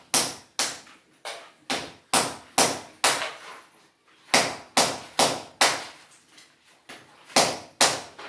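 Hand hammer striking repeatedly at the base of an aluminium door frame being knocked out. The sharp blows come about two a second, in three runs with short pauses between them.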